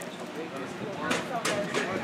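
Indistinct voices of people talking, with a couple of sharp clicks about a second in.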